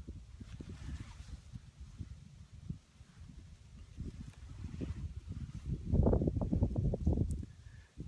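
Low crackling rumble on a phone's microphone, with no speech. It grows louder for about a second starting six seconds in.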